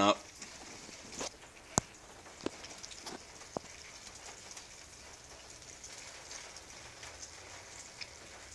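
Steady hiss of rain falling on a surface, with a few sharp ticks in the first few seconds, the loudest about two seconds in.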